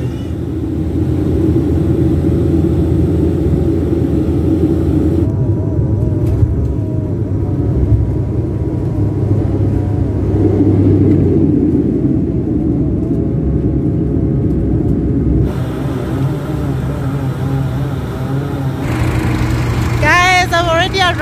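Steady low rumble of an airliner's engines and airflow heard from inside the cabin during descent and landing.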